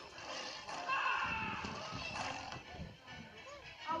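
Animated film's soundtrack playing through a portable DVD player's small built-in speaker: music with character voices.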